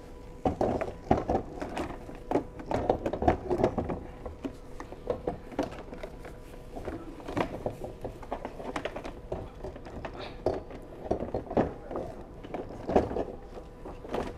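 Irregular plastic clicks, knocks and rattles as a disc scrub brush is pushed in under the plastic brush deck of a HiClean HC50B floor scrubber and worked onto its latch. The knocks come thickest in the first few seconds, then sparser. A faint steady hum runs underneath.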